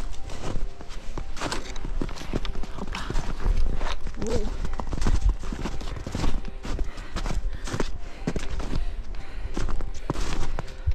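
Footsteps crunching and scuffing in snow as a hiker climbs a steep slope, in an uneven rhythm of steps, with a low rumble underneath.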